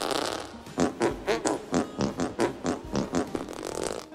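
A man's voice in rapid, short strained huffs, about six a second, after a brief hiss at the start.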